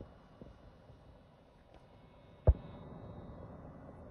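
A single sharp, dull knock about two and a half seconds in, followed by a faint low rumble.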